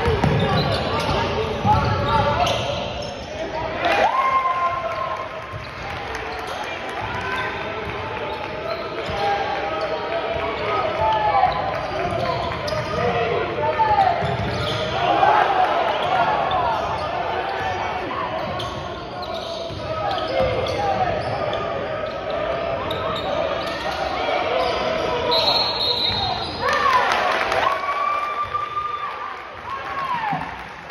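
Basketball being dribbled on a hardwood gym court during a game, with shoes squeaking on the floor and players and spectators calling out, all echoing in a large gymnasium.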